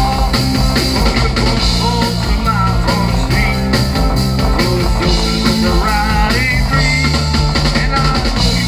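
Live rock band playing loud and steady: drum kit, bass, electric guitars and keyboards, with a wavering lead melody line on top.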